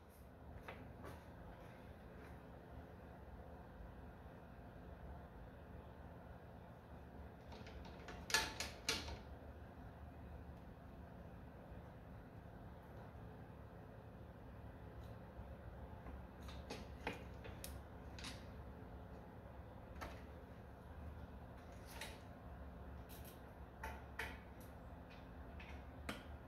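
Faint, scattered clinks and knocks of hand tools on metal engine parts as parts are worked loose from the back of a tractor's diesel engine. There is a cluster of knocks about a third of the way in and more scattered ones later, over a steady low hum.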